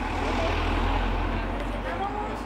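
A car driving past close by, a low engine and tyre rumble that swells and then fades away near the end, over a background murmur of people talking.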